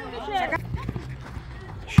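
Voices calling out across the pitch, then a single sharp thud of a football being kicked hard right at the end: a defender's clearance.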